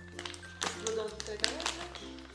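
Plastic candy pouch crackling and crinkling in bursts as it is pulled open by hand, over background music with sustained low notes.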